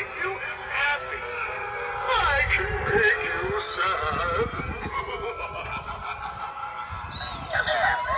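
Animatronic Halloween clown prop talking and cackling in a prerecorded voice through its small built-in speaker. The sound is thin, with no bass.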